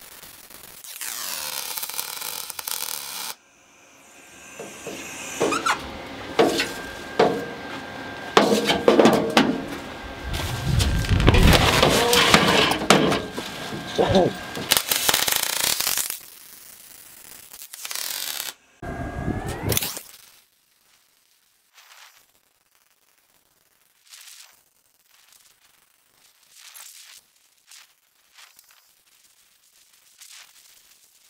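MIG welding arc running on aluminium tube seams, crackling and buzzing in welding runs that stop and start. After about twenty seconds it drops to near quiet with only faint ticks.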